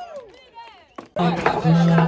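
Crowd voices at a skateboard contest podium, a single sharp wooden knock about a second in, then a sudden burst of loud shouting and cheering.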